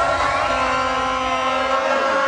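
A crowd cheering, many voices holding long notes that slide up and down over one another.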